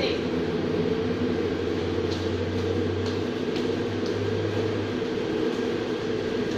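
A steady mechanical hum, with a low drone that grows stronger for a few seconds in the middle, and a few faint clicks.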